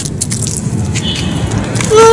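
Low, steady rumbling background noise with faint voices in it.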